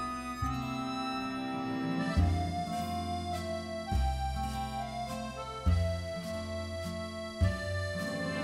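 Background music with sustained chords and a deep bass line that steps to a new note every second or two.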